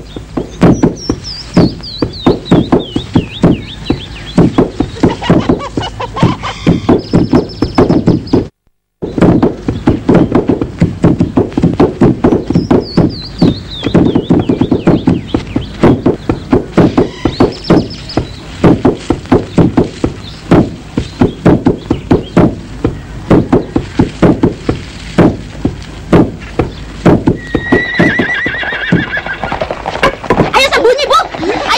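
Long wooden pestles pounding rice in a wooden trough: a fast, irregular clatter of wooden knocks, broken by a brief dropout about nine seconds in. Twice a long, high, falling cry sounds over the knocking, about a second in and again about twelve seconds in.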